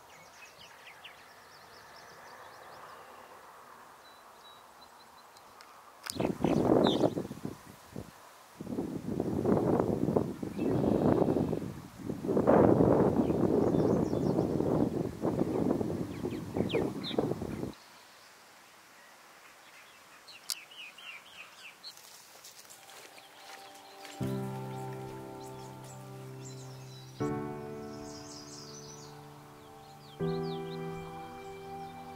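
Small birds chirping over quiet open-air ambience, broken in the middle by several seconds of loud rushing noise in uneven bursts that stops abruptly. Near the end, gentle background music starts with sustained chords struck twice.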